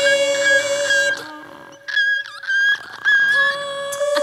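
Women's voices singing a cappella: one voice holds a steady note while higher voices come in with short phrases that slide and waver in pitch, with a brief lull about a second and a half in.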